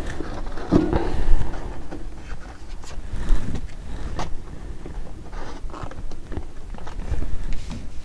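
Tarot cards being drawn out of upright decks standing in a box: irregular scraping and rubbing of card against card, with a few short clicks.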